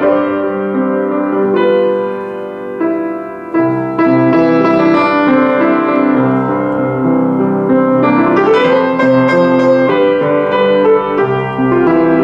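Diapason D-183BG grand piano played with held notes and chords. The instrument is slightly out of tune. The playing softens about two to three seconds in, then comes back fuller about four seconds in.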